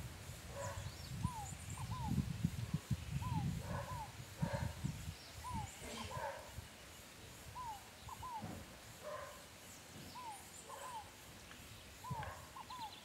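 An animal calling in pairs of short falling notes, about every two seconds, with faint bird chirps higher up. A low rumble runs underneath in the first half.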